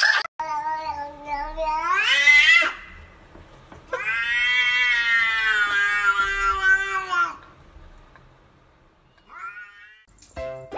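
A cat meowing: two long drawn-out meows, the first rising in pitch at its end, then a short meow near the end.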